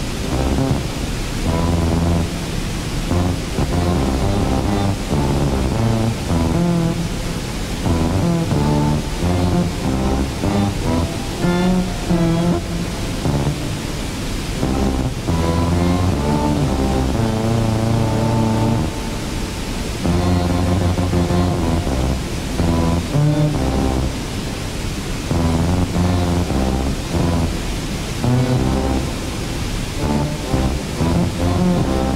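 Improvised synthesizer music through a small portable speaker: low sustained notes that change every second or so, some wavering in pitch. The steady rush of a waterfall runs beneath.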